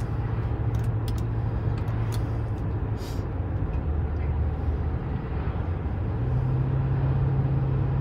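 2008 Lincoln Town Car's 4.6-litre V8 heard from inside the cabin under acceleration, over steady tyre and road noise. About three seconds in, the engine drone drops in pitch as the automatic transmission upshifts smoothly, then it climbs again from about six seconds in as the car gathers speed.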